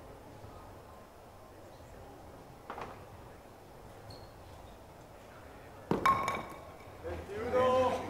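A bolo palma ball striking the wooden pins with a sharp knock and a brief ringing clatter about six seconds in, knocking a pin down. A fainter knock comes earlier, and men's voices start just before the end.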